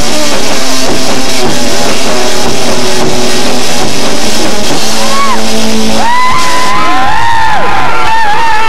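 Loud live rock band, drum kit and electric guitar, playing; about six seconds in the band sound gives way to voices calling out.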